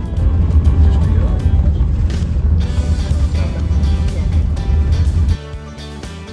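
Steady low engine and road rumble inside a moving motorhome's cabin, heard under background music; the rumble cuts off suddenly about five seconds in, leaving only the music.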